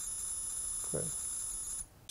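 TonePrint app data signal from an iPhone held over a guitar pickup: a steady, high-pitched electronic tone with several evenly spaced overtones, cutting off near the end.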